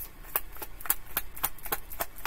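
A deck of tarot cards being shuffled by hand: a run of sharp card clicks at uneven spacing, about five a second.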